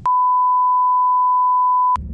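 Loud, steady 1 kHz reference test tone, the beep that goes with TV colour bars, holding one pitch for nearly two seconds and cutting off suddenly.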